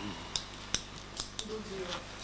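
Quiet room with a few short, sharp clicks, about four in a little over a second, followed by faint low voices near the end.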